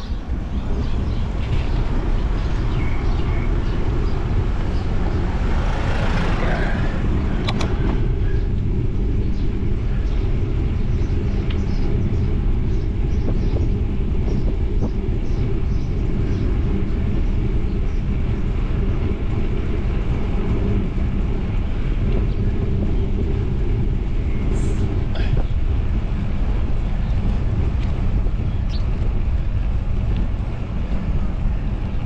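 Steady wind buffeting and road rumble on a GoPro action camera's microphone while riding along a paved road. A louder, wider rush swells and fades about six seconds in and ends in a sharp click.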